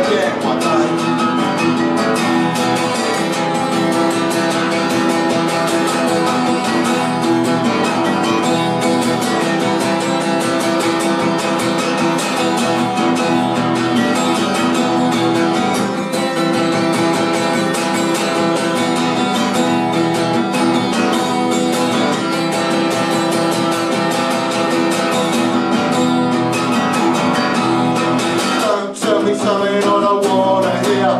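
Steel-string acoustic guitar strummed in a steady rhythm, an instrumental break between sung lines of the song.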